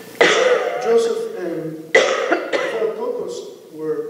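A man coughing and clearing his throat: two sudden coughing bouts, the first just after the start and the second about two seconds in, each trailing off into throat clearing.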